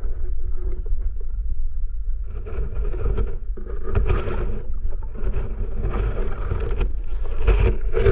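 Underwater sound picked up by an action camera while snorkeling: a constant low, muffled rumble of moving water, with several bursts of rushing noise, each about a second long, from about two and a half seconds in.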